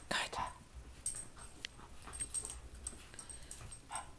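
Two dachshund puppies wrestling and tugging at a toy, making light scuffling sounds with scattered small clicks and rustles.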